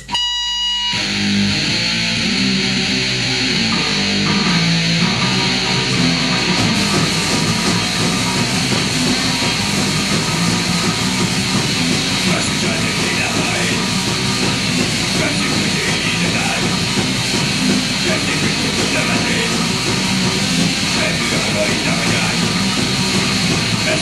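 Punk rock song with loud electric guitar and drums, running steadily; the low end fills out about seven seconds in.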